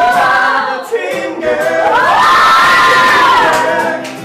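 A group of voices singing together without accompaniment, holding long notes that rise in pitch about halfway through, mixed with cheering.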